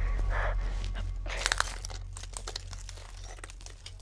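Gritty scraping and crunching of a body dragging itself across asphalt, with small clicks and two short scuffs. A low drone fades away underneath.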